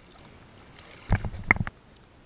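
A short half-second burst of water splashing and knocks against a waterproof action-camera housing at the water's surface, starting about a second in, as a swimmer reaches the camera.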